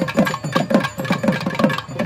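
Thavil drums playing a fast even run of strokes, about seven a second, each low stroke dropping in pitch, over a faint held nadaswaram note.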